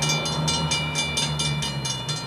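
Steam train running, with fast, even beats of about six or seven a second over a steady low rumble.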